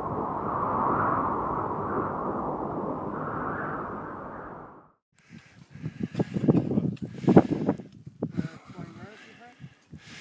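A steady rushing noise, like wind, that swells and then fades out about five seconds in. It is followed by irregular knocks and scuffs from a team of climbers moving on snow, with faint voices.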